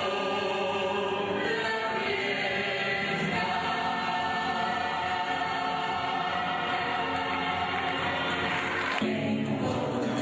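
A woman and a man singing together into microphones over musical accompaniment, holding long notes; the music changes about nine seconds in.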